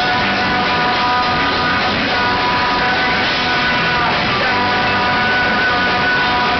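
A rock band playing live at full volume: electric guitars holding ringing notes over bass guitar and drums, with no let-up.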